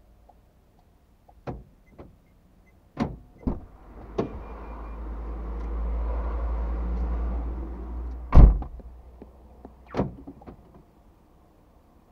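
Sharp clicks and knocks, then a rushing noise that swells and fades over about four seconds. Near the end comes a loud, heavy car-door thump, and one more knock follows.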